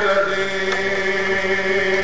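A man's voice in chanted majlis recitation, holding one long note that steps down slightly in pitch at the start and then stays steady.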